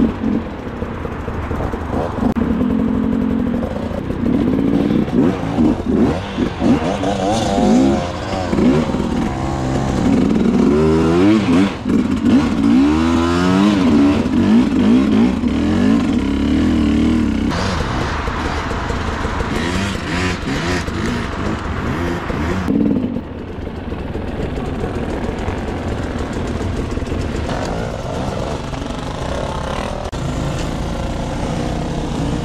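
Enduro dirt bike engine heard up close from the rider's own bike, revving up and down repeatedly as it works along a rough hillside trail, then holding a steadier, lighter note with less throttle for the last several seconds.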